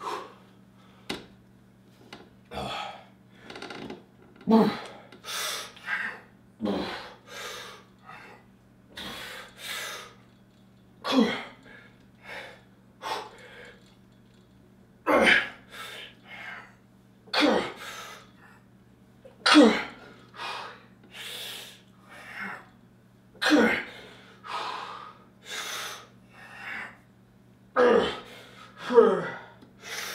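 A man's forceful, effortful breathing through a max-rep set of bodyweight pull-ups: a hard breath pushed out roughly every two seconds, with quicker breaths between. A steady low hum runs underneath.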